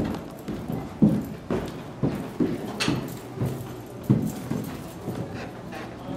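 Footsteps going down a staircase: a run of thudding steps, about two a second.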